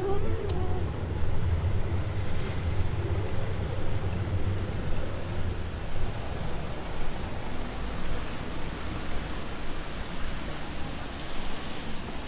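Street traffic on a wet road: a steady hiss of tyres on wet tarmac over a low rumble of passing cars.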